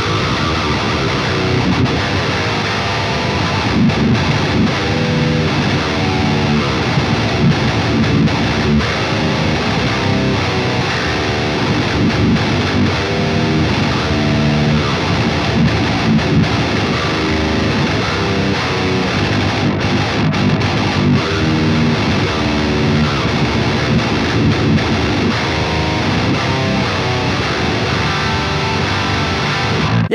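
Heavily distorted 27.75-inch-scale baritone electric guitar with an aluminum neck, tuned to Drop G, playing continuous heavy-metal riffs and quick, shreddy note runs through a high-gain amp.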